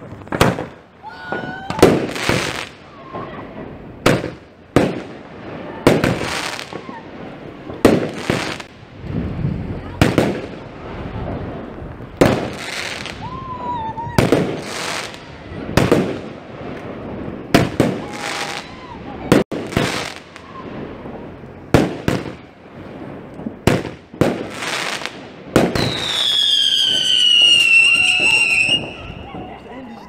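Weco Wolfblood 200-gram firework cake firing a series of shots, about one to two seconds apart, each shot followed by its burst in the air.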